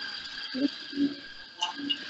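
A pause in speech: a few faint, short vocal sounds from the speaker, over a steady high-pitched background whine.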